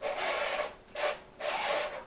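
A diamond grinding cup rubbed face-down against a flat lapping surface in three rasping strokes, the lapping motion used to true a cup that has started to run out.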